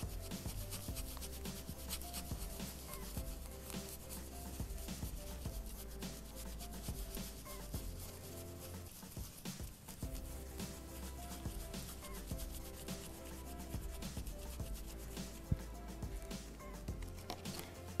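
Dry stencil brush rubbing paint in small circles over a stencil on a wooden board: a continuous run of short, scratchy brush strokes.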